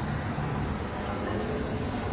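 A steady low rumble of indoor background noise, even throughout, with no distinct events.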